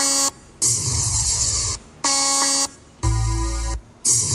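Pickup-bed car audio speaker box with woofers and horn tweeters, driven by a Soundigital SD2300 amplifier, playing loud bursts of about a second with short gaps between them. Deep bass hits with hiss alternate with buzzy held tones, about four bursts in all.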